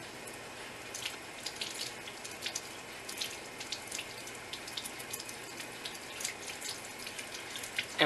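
Tap water running as a soapy makeup foundation brush is rinsed and worked between the fingers under the stream. The steady hiss carries many small, wet clicks from about a second in.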